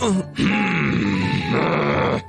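A cartoon character's long, drawn-out groan of exhaustion over background music.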